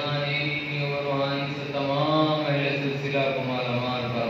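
A man's voice chanting a supplication (dua) in a drawn-out, sing-song recitation, holding long notes on a low pitch.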